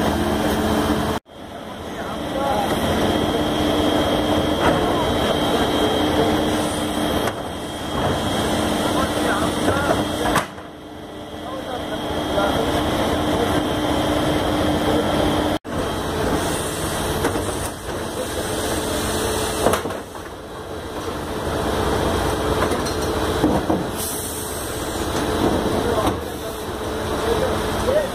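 Faun Rotopress garbage truck running, its engine and continuously spinning drum making a steady, loud mechanical hum with a high whine, with people talking over it. The sound cuts off abruptly a few times.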